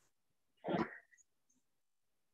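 A man gives one short cough, clearing his throat.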